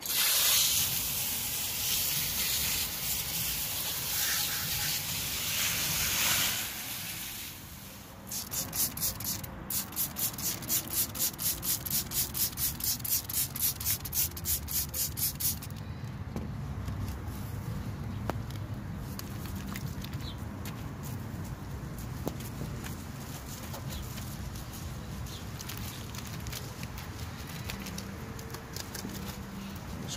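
Wheel cleaning: a steady hiss of spray for about six seconds, then a run of quick swishing strokes, about four a second, for some seven seconds, then quieter.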